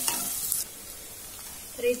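Chopped onion and green chilli sizzling in hot butter and oil in a nonstick kadhai as a wooden spatula stirs them, the sauté stage. The loud sizzle cuts off suddenly about half a second in, leaving a faint hiss.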